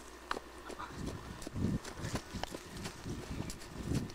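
Soft, irregular low thumps, several a second, starting about a second in, with a few sharp clicks among them.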